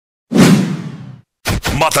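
A swoosh sound effect that starts suddenly about a third of a second in and fades out over about a second, as the intro logo animation opens. A voice begins near the end.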